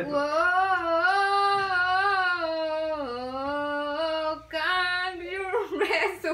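A woman singing a slow melody, holding long notes that slowly rise and fall in pitch, with a short break about four seconds in before a final phrase.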